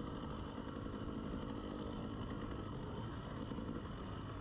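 KTM 300 two-stroke enduro dirt bike engine running at a steady, light throttle as the bike rolls along a dirt track, heard from the rider's own bike.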